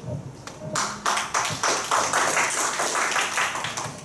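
An audience clapping in applause, beginning about a second in and carrying on steadily.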